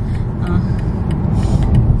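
Steady low rumble of road and engine noise inside a moving car's cabin.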